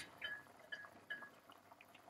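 Broth at a rolling boil in a pot: faint bubbling with a few small, soft pops.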